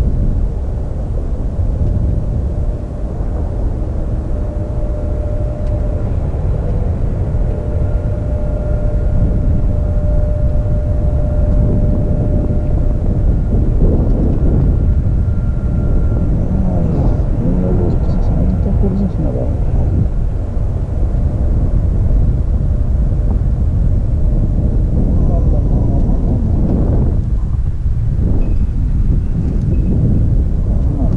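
A fighter jet's engine running on the runway: a steady low rumble with a thin steady whine through the first half, mixed with wind buffeting the microphone.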